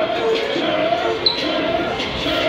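Several voices talking in a gym hall, with one sharp smack a little over a second in.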